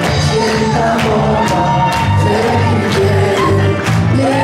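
Live band playing an upbeat dance tune with electric guitar, drums and a sung melody over a steady beat, with crowd voices mixed in.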